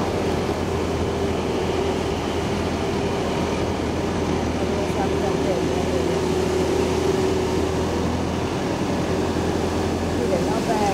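A machine drone running steadily, with a constant low hum and a steady held mid tone under it.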